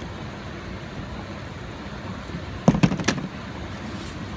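Steady rush of flowing water, with a quick cluster of sharp clicks and knocks about two-thirds of the way through.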